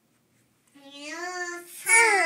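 A young child singing a long held note, starting just under a second in, then a loud high squeal that slides down in pitch near the end.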